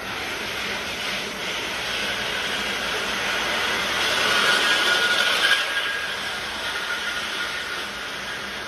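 Towing-tank carriage running along its rails with a model planing boat, the hull's spray hissing in the water: a steady rushing noise that swells to its loudest as it passes, about four to five seconds in, then eases.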